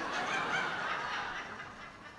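A small audience laughing, a spread-out wash of laughter that swells in the first second and then dies away, a joke's punchline having just been told.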